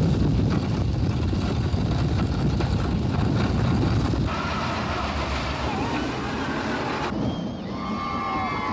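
Roller coaster train rumbling along its track at speed, with wind rushing over the microphone. The sound changes abruptly about four seconds in and again near the end, and faint rider screams come through in the middle stretch.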